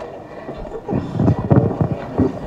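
Low rumbling thumps and rustle of a handheld microphone being handled and lowered, starting about half a second in.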